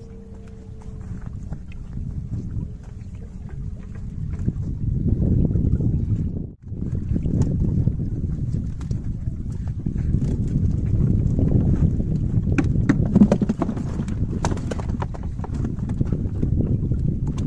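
Low wind rumble on the microphone over water sloshing and dripping as a wet keepnet is hauled out of the lake. The sound cuts out briefly about six and a half seconds in. From about twelve seconds in come sharp clicks and taps as the net and fish are handled over a plastic bucket.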